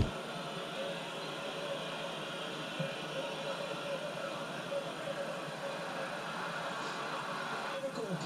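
Stadium crowd noise from a televised football match, playing through a TV's speaker in a small room: a steady, even din with no deep bass.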